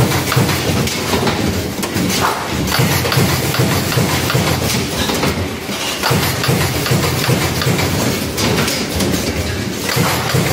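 An automatic plastic-card punching and sorting machine running: a steady mechanical hum with a dense, continual clatter of clicks from its moving parts.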